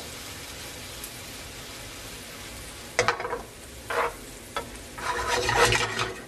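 Celery, onion and scallion sizzling with a melting pat of butter in a hot skillet. The sizzle runs steady for about three seconds; in the second half a spoon scrapes the pan in several short stirring strokes, closing with a longer run of them.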